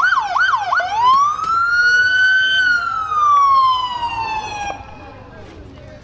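Police car siren sounding in short bursts: a few quick yelp sweeps, then one long wail that rises and slowly falls before cutting off suddenly after about four and a half seconds.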